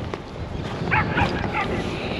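A small dog yips three or four times in quick succession about a second in, over a steady rumble of wind on the microphone.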